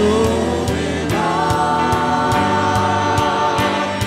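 Praise team of several voices singing together over a band with a steady beat, holding one long note through the middle.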